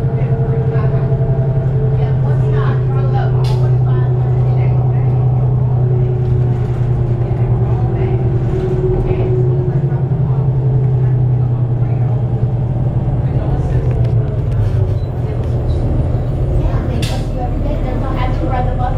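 Cabin of a 2008 New Flyer D35LF transit bus under way, with the Cummins ISL diesel's loud, steady low rumble filling the interior (very rumbly). Fainter tones above the rumble drift slowly down and back up in pitch. Two brief sharp knocks come about three seconds in and again near the end.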